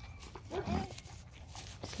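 A calf grazing at close range: a few short tearing clicks as it bites off grass. A brief low voice-like sound comes a little before the middle.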